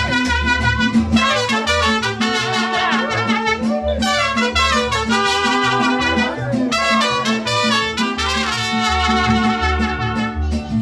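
Mariachi band playing an instrumental passage: trumpet carrying the melody over strummed guitars, with a steady low beat underneath.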